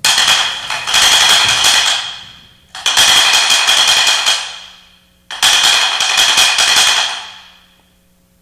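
Altar bells (sanctus bells) shaken three times, each a rapid jingling ring that dies away over about two seconds, marking the elevation of the consecrated host.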